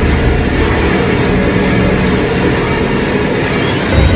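Loud, steady rumbling noise from a horror film's sound design, heavy in the low end and layered with music, swelling briefly near the end.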